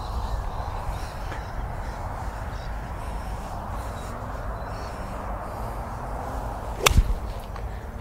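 A golf iron striking a ball off turf: one sharp, short crack about seven seconds in, over a steady low background noise.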